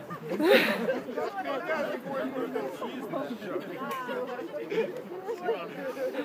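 Indistinct chatter of several people talking over one another, with a louder burst about half a second in.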